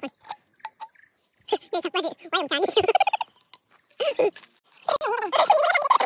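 Chicken squawking in a series of short, pitched calls, loudest near the end.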